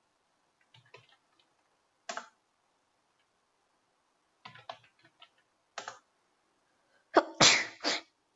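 Computer keyboard keystrokes, a few scattered clicks, then a loud sneeze near the end.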